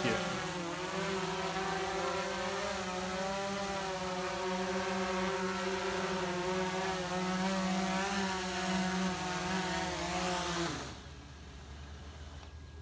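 DJI Phantom 4 Pro V2 quadcopter's motors and propellers humming steadily as it hovers low, the pitch wavering slightly. The hum cuts off suddenly about a second before the end as the motors stop.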